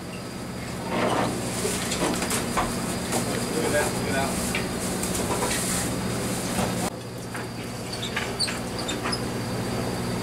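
Steady low hum of a fishing boat's motor, under a hiss of wind and sea, with people's voices talking in the background and a few light knocks in the last few seconds.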